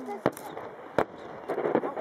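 Aerial fireworks shells bursting: a sharp bang about a quarter second in and a louder one about a second in, with spectators' voices in between.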